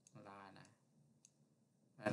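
Faint computer mouse clicks, three of them about half a second apart, with a brief low murmur of a man's voice under the first two.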